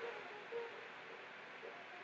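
Faint steady background hiss in a pause between spoken phrases, with no machine running.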